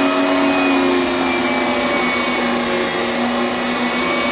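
Electric meat grinder motor running steadily under load as chunks of wild hog meat are fed through its auger and fine plate.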